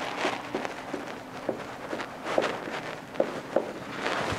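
Marker writing a word on a whiteboard: a run of short scratchy strokes with a few brief squeaks.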